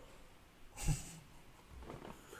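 A man's single breathy burst of laughter about a second in, with faint room sound around it.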